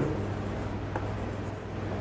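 Chalk writing on a chalkboard: faint scratching with a light tick or two as a word is written out.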